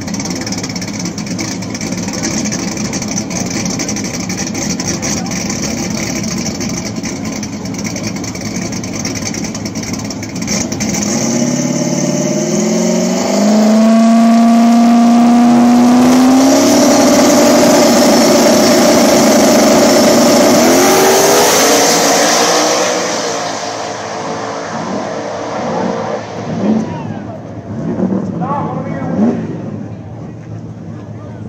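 Boosted drag-race car engines at the starting line: idling, then one rises in steps to high rpm and holds there loudly for about ten seconds with a thin high whine, then drops away. A few short blips of the throttle follow near the end.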